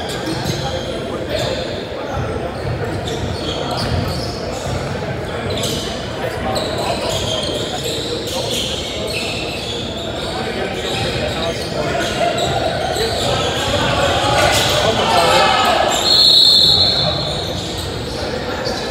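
Basketball game in an echoing gymnasium: the ball bouncing on the hardwood floor amid players' indistinct shouts. A short, high referee's whistle blast sounds about two seconds before the end.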